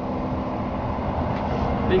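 Steady low background noise with a faint hum, with no clear event in it; a voice starts near the end.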